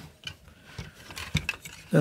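Plastic parts of an X-Transbots Aegis transforming robot figure being handled: a few faint clicks and knocks as an arm joint is rotated into place.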